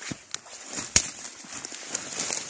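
Dry twigs and leaf litter crackling and snapping in forest undergrowth, with a few sharp snaps, the loudest about a second in.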